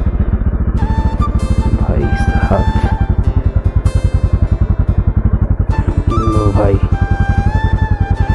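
Yamaha FZ motorcycle's single-cylinder engine running steadily at low revs as it is ridden slowly over a muddy track, under background music with singing.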